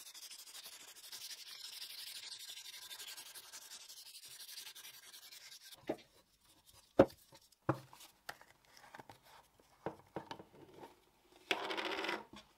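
A strip of sandpaper pulled quickly back and forth around a cleaver's rosewood-and-resin handle, a steady fast rasping, stops after about six seconds. Then come a few sharp knocks of the cleaver being handled and set down on a wooden table, the loudest about a second after the sanding ends, and a short scrape near the end.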